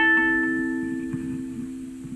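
A mini ukulele chord, picked up by a clip-on pickup and played through a Roland amplifier, ringing out and fading away steadily.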